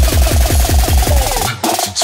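Electronic dance music: a fast, driving kick drum roll building up, which cuts off abruptly about one and a half seconds in for a short break.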